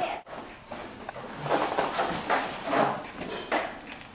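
Two fighters grappling on a mat: bodies and gear scuffing on the mat, with heavy breathing and grunts coming in several irregular bursts.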